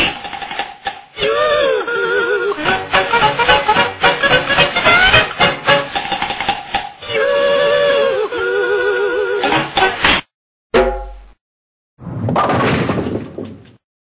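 Dubbed-over comedy soundtrack of music and cartoon-style sound effects: wavering, wobbling tones over clatter and crashing. It cuts off suddenly about ten seconds in, followed by a few short separate bursts of sound.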